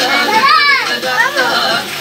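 Children's voices: a high-pitched call that rises and falls, then a second shorter one about a second in, over other voices talking.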